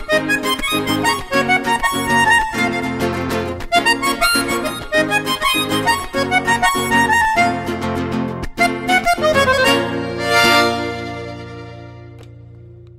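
Diatonic button accordion playing a lively vallenato passage, a reedy melody over regularly pulsing bass chords. About ten seconds in it closes on a long held chord that fades away.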